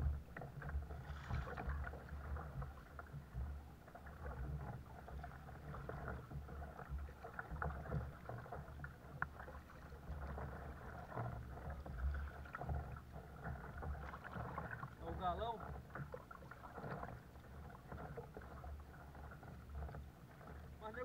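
Paddling a Caiman 100 sit-on-top kayak: double-bladed paddle strokes dipping into the sea, with water splashing and slapping against the hull as an irregular run of splashes and knocks.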